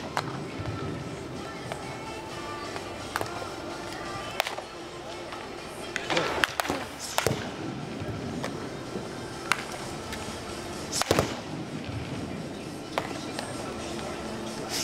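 Sharp cracks of a bat striking baseballs in cage batting practice, about eight at irregular intervals, with a close cluster about six to seven seconds in. Steady background music and indistinct voices run underneath.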